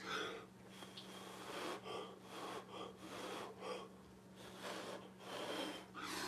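Faint, short puffs of breath, about two a second, as a person blows by mouth across wet acrylic pour paint to push it out into wispy patterns. A faint steady hum sits underneath.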